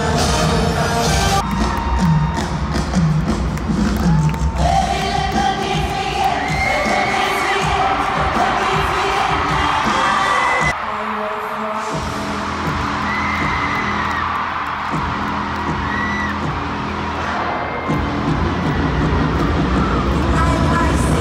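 Amplified concert music playing through a stadium sound system, with a stadium crowd cheering and screaming over it. About eleven seconds in the sound changes abruptly: the bass drops out for a second, then the music picks up again.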